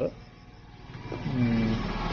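Low room tone for about a second, then a man's voice from about a second in.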